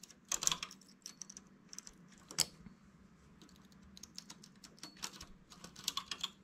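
Light, irregular metal clicks from a knitting machine's needle bed as stitches are moved by hand with a transfer tool to make lace eyelets, the latch needles and tool tapping as they are worked.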